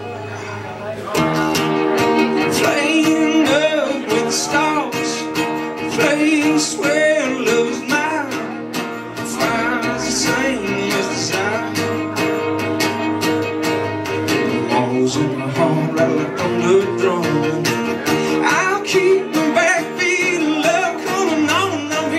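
Instrumental break of an acoustic country song: a fiddle carries a wavering lead melody over strummed acoustic guitar and upright bass, the playing growing fuller about a second in.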